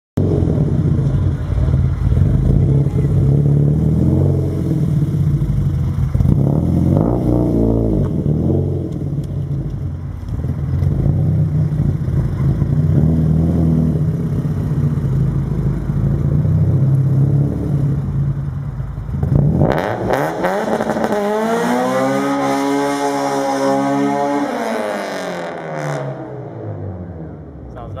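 Acura Integra GSR's engine through a Skunk2 Megapower R exhaust, loud and deep, revving repeatedly during a burnout attempt. Near twenty seconds the revs climb sharply to a high wail, then the pitch drops and the sound fades as the car pulls away.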